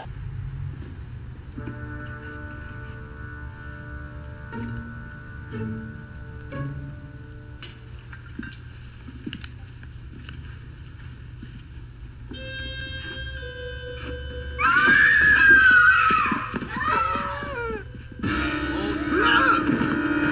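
Film soundtrack: a quiet, suspenseful score of held notes over a low hum. About fifteen seconds in comes a loud cry that slides up and down in pitch, and a fuller chord of music enters near the end.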